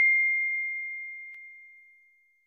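Fading ring of a single bell-chime 'ding' sound effect from a subscribe-button animation: one pure, high tone dying away steadily, with a faint click about two-thirds of the way through.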